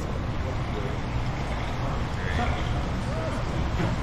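Steady low machine hum under an even hiss of running water, from the seawater circulation feeding the touch tank, with faint voices in the room.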